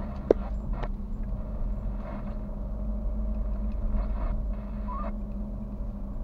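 Car engine and road noise heard from inside the cabin while driving slowly: a steady low hum. Two sharp clicks come within the first second.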